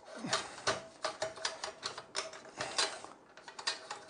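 Metal clicks and rattles from a Nobex mitre saw's frame as its blade tension is adjusted by hand: an irregular run of light clicks, several a second.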